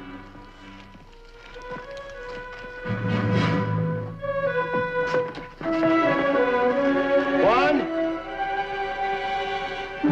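Dramatic background music of long held notes, with a low swell coming in about three seconds in and a louder, fuller stretch from about six seconds.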